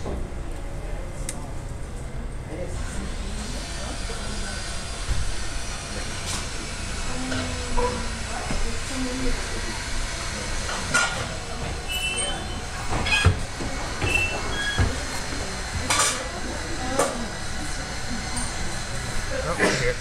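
Espresso Book Machine running with a steady low mechanical rumble and hiss. Several sharp clicks and clunks come in the second half as the machine works on the bound book.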